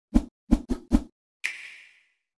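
Channel-logo intro sting made of sound effects: four quick low thumps in the first second, then a sharp bright hit about a second and a half in that rings and fades away.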